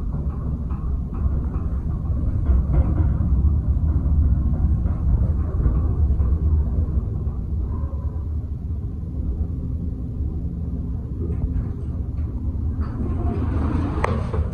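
Traction service elevator car travelling, with a steady low rumble. Near the end the doors open and a brighter, noisier sound comes in.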